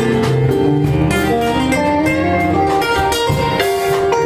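Live acoustic guitar music: a picked melody line of single notes over strummed chords.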